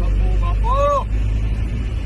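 Steady low rumble of a van's engine and road noise heard inside the cabin while driving, with a short vocal syllable from one of the men just under a second in.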